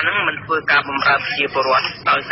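Speech only: a voice reading the news aloud.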